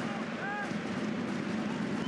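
Football stadium crowd noise: a steady din from the stands, with a brief voice-like call about half a second in.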